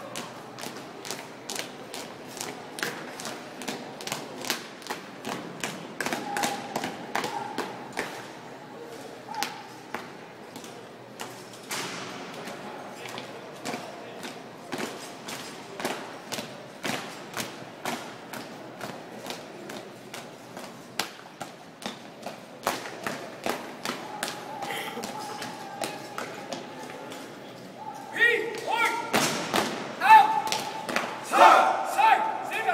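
Drill team's marching steps on a concrete floor: many feet striking together in a steady, even beat of sharp thuds. Voices talk in the background, louder near the end.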